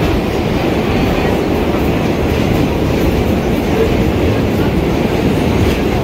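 Vintage New York City subway car running on the track, heard from inside the car: a loud, steady rumble of wheels and car body with no letup.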